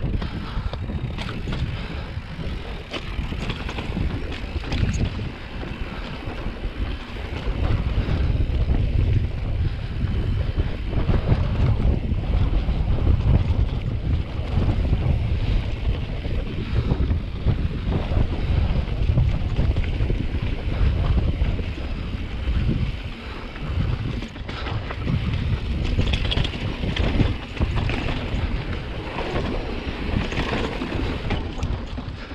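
Mountain bike riding down rocky singletrack: wind rushing over the microphone with tyre rumble over slickrock and dirt, and scattered clicks and rattles from the bike. It gets heavier and rougher from about a quarter of the way in until shortly past two-thirds.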